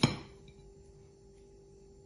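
A kitchen knife cutting through a raw carrot strikes the ceramic plate beneath with one sharp clink right at the start, ringing briefly before it fades. A faint steady hum remains under the quiet that follows.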